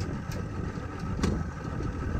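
Boat's outboard motor idling with a steady low rumble, with two short clicks about a third of a second and just over a second in.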